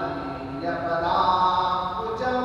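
A man's voice chanting a verse in a melodic, sing-song recitation, holding some notes at a steady pitch.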